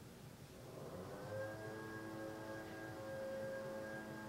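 Singing bowl tone swelling in about a second in, then holding steady as several layered ringing tones.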